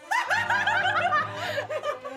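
A young woman laughing hard in a fast run of short bursts.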